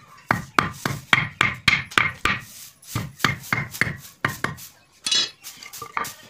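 A hand-held blade chopping into a green wooden stick resting on a wooden plank, carving it to a point: quick, sharp strikes about three a second, with a short pause about halfway through.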